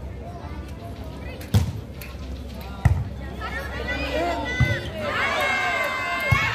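A volleyball is struck three times during a rally, each hit a sharp thump a second or more apart. Players and spectators call out throughout, and the voices swell into loud shouting near the end.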